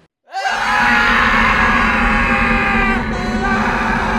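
Two young men screaming together in fright. The scream sweeps up in pitch as it starts, about a third of a second in, and is then held as one long scream.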